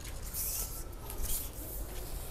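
Faint handling noise of measuring a tree: brief rustling and scraping about half a second in and again a little after one second.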